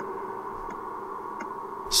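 A steady ambient drone from the soundtrack, holding several tones at once, with two faint ticks in the middle.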